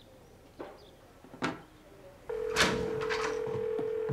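A couple of soft clicks, then a smartphone's steady single-pitch telephone tone lasting about two seconds, the tone of an outgoing call being placed.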